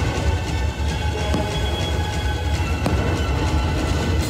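Aerial fireworks going off over the show's soundtrack music: a continuous low rumble of bursts, with sharp bangs about a second and a half and three seconds in.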